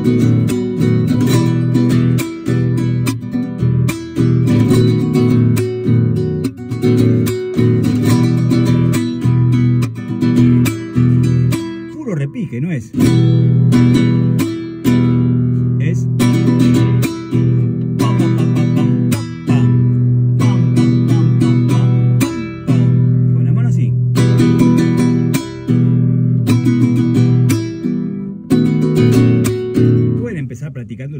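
Nylon-string classical guitar strummed in a fast zamba carpera rhythm, with percussive strokes and rolled repiques, while a man sings along. The strumming breaks off briefly a few times.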